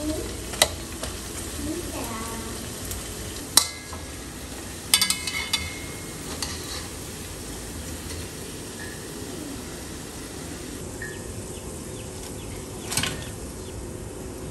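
Battered fritters deep-frying in hot oil in a wok, a steady sizzle throughout. A stainless mesh skimmer clinks against the pan a few times as pieces are scooped out, the sharpest knock about three and a half seconds in and another near the end.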